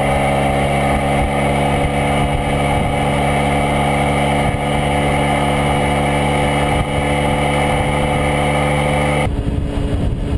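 Honda CHF50 Metropolitan 50cc four-stroke scooter engine running at a steady, unchanging pitch while cruising. Near the end the sound cuts abruptly to a rougher, less even mix.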